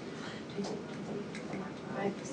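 CPR training manikin ticking with each chest compression, a regular click at the pace of the compressions, with faint voices in the room.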